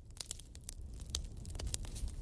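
Quiet room tone in a pause between speakers: a faint steady low hum with scattered small clicks.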